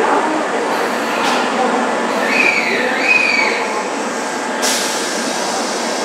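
Kintetsu 7000 series electric train coming to a stop at an underground station platform: steady running noise with two brief, falling squeals from the brakes in the middle, then a sudden hiss of air near the end.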